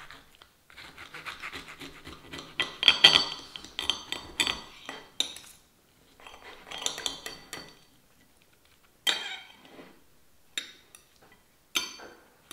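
A serrated steel knife saws through a griddle-toasted cheese-bread sandwich and scrapes on a ceramic plate, with a fork holding it, in two spells of rasping strokes. Near the end come a few sharp clinks of cutlery against the plate.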